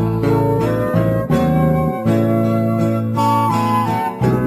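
Instrumental passage of a sertanejo song: acoustic guitar and bass under a sustained melody line, with the notes changing every half second or so.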